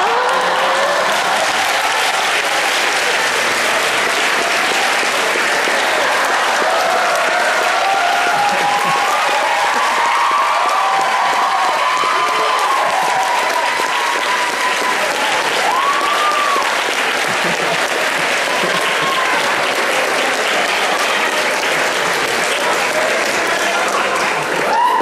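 Large audience clapping and cheering loudly and steadily, with voices calling out over the applause.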